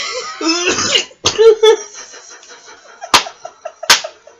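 Women laughing and coughing: rough coughs in the first second, then breathy, pulsing laughter that fades, with two sharp clicks near the end.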